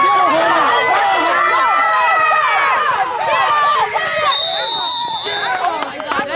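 Many spectators shouting and cheering over one another during a youth football play. A single high, steady whistle blast sounds for about a second, a little after the midpoint.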